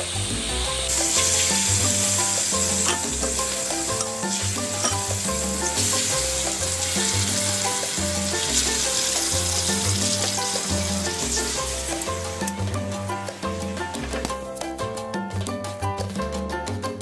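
Cubes of pork sizzling steadily as they pan-fry in hot oil in a wok, under background music with a steady bass line. The sizzling drops away near the end, leaving only the music.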